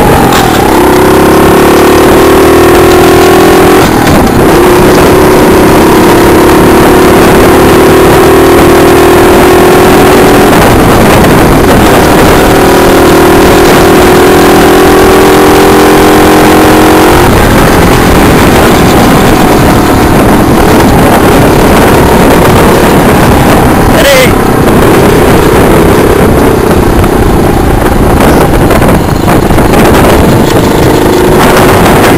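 Small 48 cc four-stroke engine of a mini chopper running under way, its pitch climbing over the first few seconds, then holding steady. About halfway through, the steady engine note gives way to a rushing noise.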